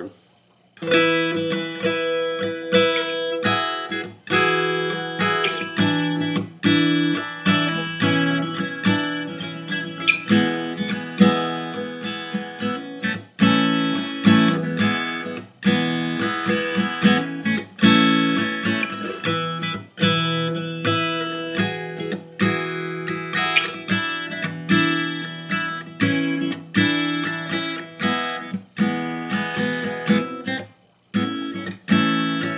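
Cutaway steel-string acoustic guitar tuned to open E, playing a repeating riff of picked and strummed notes over a ringing low open-string drone; the playing starts about a second in after a brief silence.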